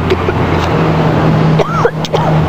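A steady low hum under constant rushing noise. Near the end comes a short high voice-like squeal that rises and falls, with a couple of clicks.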